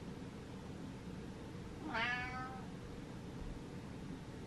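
A domestic cat gives one short meow about two seconds in, falling in pitch.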